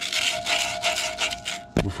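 Sandpaper rubbed back and forth by hand on the steel shaft of an air-handler blower motor at the blower wheel's hub, in quick strokes about three a second. This is the shaft being cleaned of rust and burrs so the blower wheel can slide off it.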